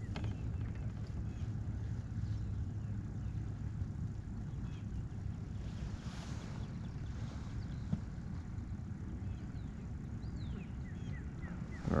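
Open-water background: a steady low rumble with a faint hiss above it, one small click about eight seconds in, and a few faint high chirps near the end.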